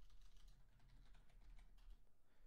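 Faint computer-keyboard typing, a quick run of soft key clicks.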